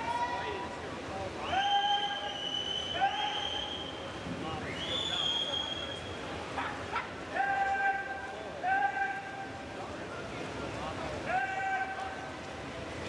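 Spectators shouting encouragement at the swimmers: a string of long, high-pitched yells, each rising and then held for about a second, coming every second or two over the steady noise of the pool hall.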